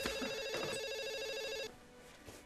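Cordless home telephone ringing with a steady electronic tone that stops abruptly a little before the end. A single sharp click comes right at the start.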